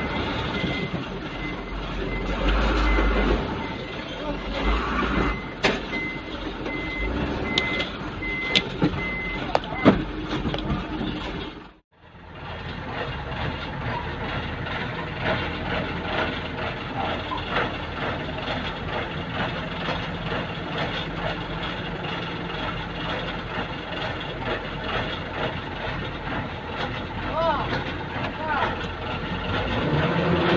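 A vehicle's back-up alarm beeping steadily on and off over heavy machinery noise at a garbage dump. After a short break the beeping has stopped, and garbage truck engines keep running with a low rumble.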